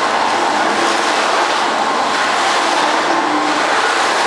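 Snack flavouring drum machine running with fried namkeen tumbling inside: a steady, even noise.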